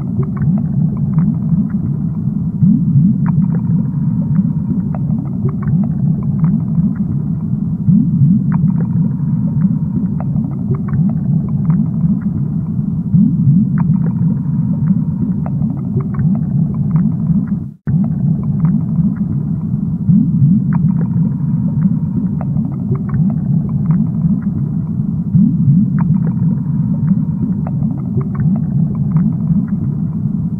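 Aquarium water ambience: a steady low rumble with scattered faint clicks. It drops out for an instant a little past halfway.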